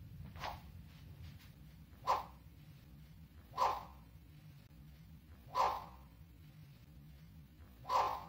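Iaito (practice katana) blade swishing through the air with each cut: a faint whoosh about half a second in, then four sharper whooshes roughly every one and a half to two seconds, the last at the very end.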